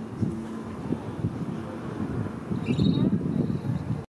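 Last acoustic guitar chord fading out in the first second, then a low, uneven street rumble, with a short high chirp about three seconds in.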